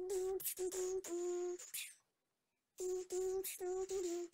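A voice humming short, clipped notes on one steady pitch in a rhythmic, beat-like pattern, as a mouth-made backing beat for a rap. A run of notes comes first, then a pause of nearly a second, then another run.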